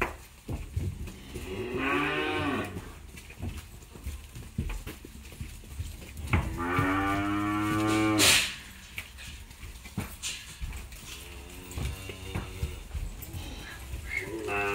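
Young cattle mooing: a call about two seconds in, then a longer, louder moo about seven seconds in, and a fainter one near the end, with scattered short knocks between.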